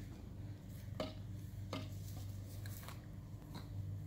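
Quiet outdoor background with a steady low hum and a few faint clicks, as the batter gets set at the tee.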